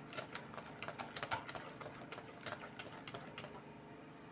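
Wire whisk clicking against a stainless steel bowl while stirring thick, smooth cake batter: a quick, irregular run of light ticks that thins out near the end as the whisk is lifted.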